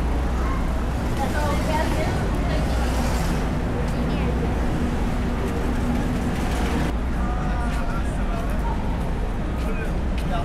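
Busy city street ambience: passing pedestrians talking and chatting over a steady low rumble of road traffic.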